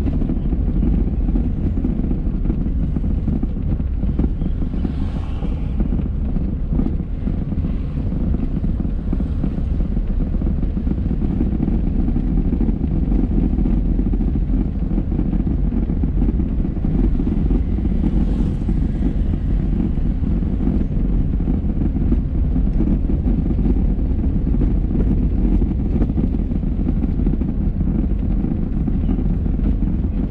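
Steady low rumble of a car driving slowly through town streets, engine and tyre noise heard from inside the cabin.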